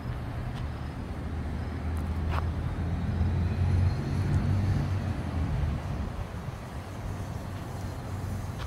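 Road traffic: a low vehicle rumble that swells to its loudest about three to five seconds in and then fades, as a vehicle passes.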